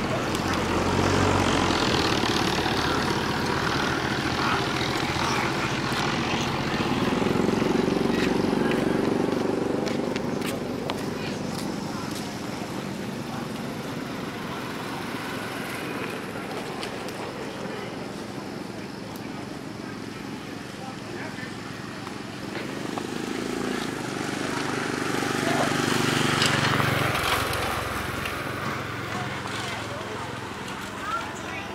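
Roadside ambience with indistinct voices, as passing motor vehicles swell and fade twice, about eight seconds in and again about twenty-six seconds in.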